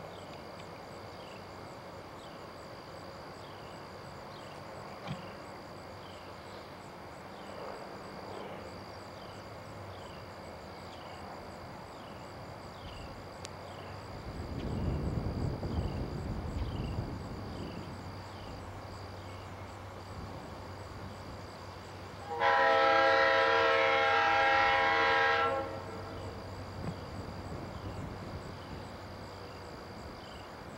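Diesel freight locomotive approaching, its low engine rumble swelling about halfway through, then one long air-horn blast of about three seconds with several notes sounding together. Insects chirp steadily in the background.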